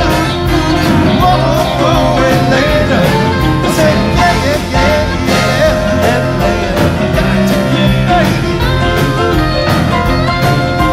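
Live rock band with electric guitars, keyboards, drums and a horn section of trumpet and saxophones playing, over a steady beat.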